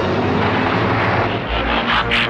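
Cartoon sound effects of cars racing in: a loud, dense rushing engine noise that starts abruptly, with a deeper rumble joining about one and a half seconds in.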